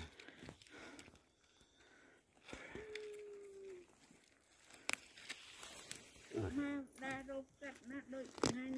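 Mostly quiet, with a person's faint voice: a short held hum about three seconds in, then low murmured speech from about six and a half seconds on. A single sharp click sounds near five seconds.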